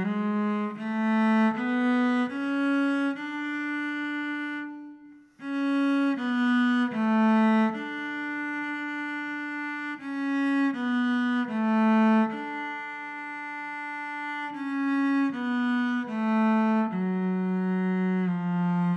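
Solo cello playing a slow single-line etude in half position, one sustained bowed note after another, with a short break about five seconds in before the line picks up again.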